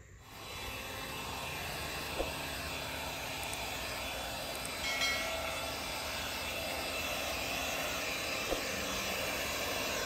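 Alloyman 20V cordless mini leaf blower running steadily: a continuous rush of air with a faint motor whine.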